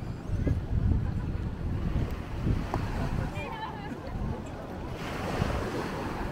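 Wind buffeting the microphone in uneven gusts, over the wash of surf on a sandy beach and faint chatter of beachgoers; the surf hiss grows brighter near the end.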